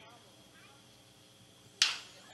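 Faint ballpark background, then near the end a single sharp crack of a baseball bat hitting the ball for a line drive.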